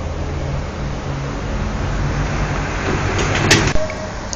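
A steady low mechanical hum, with a single sharp click about three and a half seconds in.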